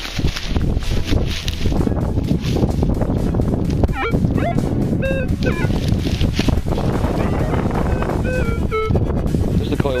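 Minelab Explorer metal detector giving target tones while its WOT coil is swept over a dug hole to pinpoint a target: short beeps that jump between a few pitches, starting about four seconds in. A steady rustling noise runs underneath.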